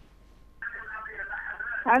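A caller's telephone line being put through to a live broadcast: a faint tone, then about half a second in the thin, hissy sound of the open phone line, with a voice coming over the line near the end.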